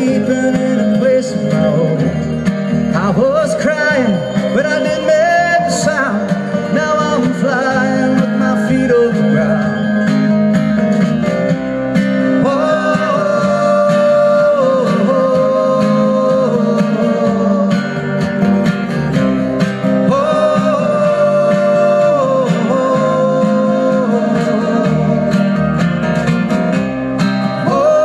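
Live acoustic band music: strummed acoustic guitars, upright bass and drums playing steadily, with held melody lines over them.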